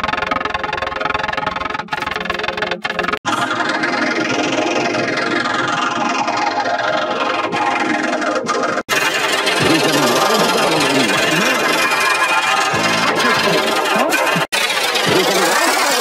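Digitally distorted, effect-processed intro jingle audio, harsh and dense. It breaks off with short dropouts about three, nine and fourteen and a half seconds in, where one rendered effect cuts to the next. In the last stretch it turns to a warbling, sweeping sound.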